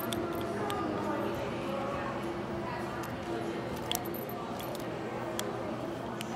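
Steady background hum with a couple of light metallic clicks, from a steel watch case-back opener wrench gripping and turning on the watch's screw-down back, about four and five and a half seconds in.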